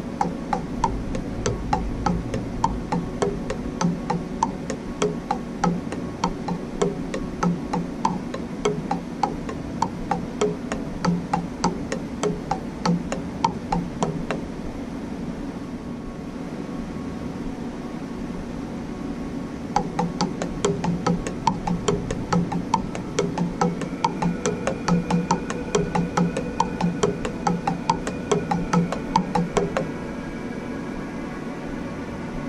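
Nylon-tip drumsticks playing a steady run of strokes on the pads of a practice pad set, over a steady background hum. The strokes stop about halfway through for roughly five seconds, then resume at a faster tempo.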